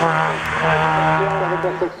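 Citroën Saxo VTS four-cylinder engine held at high revs under full throttle as the car climbs away, a steady note that slowly fades. A man's voice comes in near the end.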